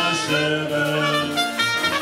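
Folk brass-band music: a trumpet leading over accordion and tuba, playing held notes that change every half second or so.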